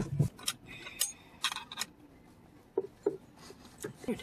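Scattered clicks, knocks and rubbing of a car's rear seat parts being handled and worked at by hand, with a short cluster of clicks in the middle and two brief voice sounds near the end.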